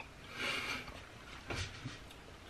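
A sip of hot coffee from a glass mug: a short airy slurp about half a second in, then a couple of soft clicks.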